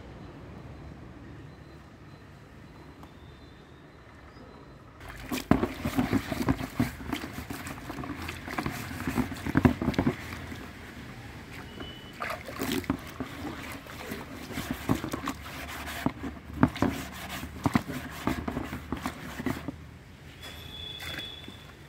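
A hand scrubbing and swishing a little water around the inside of a plastic tub: irregular sloshing and rubbing strokes that start about five seconds in and keep recurring.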